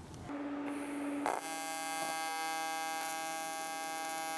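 AC TIG arc on aluminum giving a steady electrical buzz, run on AC at 161 Hz. A single tone starts about a third of a second in and turns into a fuller, many-toned buzz about a second in, which then holds steady.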